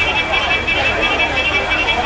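Busy street ambience of crowd chatter and traffic, with a thin high-pitched tone over it.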